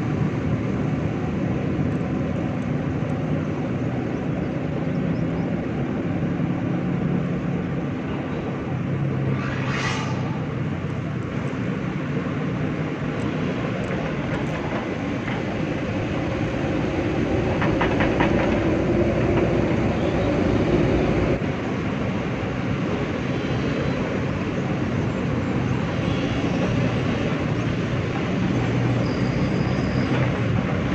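Heavy machinery at work: XCMG excavator engines running with an excavator-mounted vibratory hammer driving steel sheet piles, a steady mechanical rumble. It swells louder with a rhythmic clatter for a few seconds past the middle, and a brief high whine sounds about ten seconds in.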